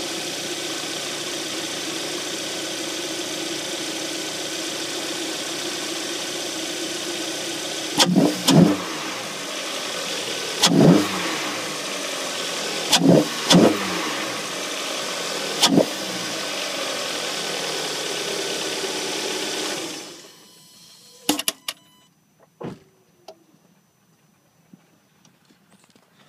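Hyundai Sonata engine breathing through an Injen cold air intake: it idles steadily, then is blipped about six times in short revs with a rise and fall of intake noise. About twenty seconds in the engine sound stops, followed by a few sharp clicks.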